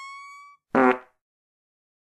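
High-pitched, squeaky fart sound effect: a thin whistling tone that creeps slightly up in pitch and cuts out about half a second in. A short voiced "uh" follows.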